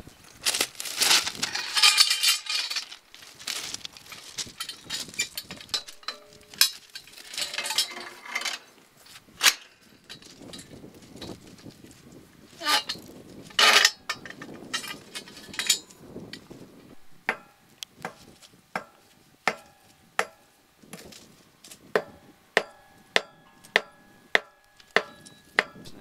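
Steel track-work tools on rail and crushed-rock ballast. First come irregular rough scraping bursts. Then, from about two-thirds of the way in, steel is struck over and over with a ringing clink, picking up to about two strikes a second near the end.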